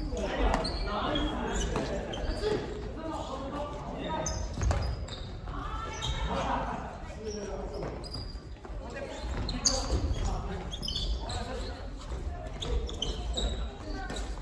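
Family-badminton rackets striking a shuttlecock during a rally, a few sharp hits echoing in a large gymnasium, the loudest about ten seconds in, amid players' voices.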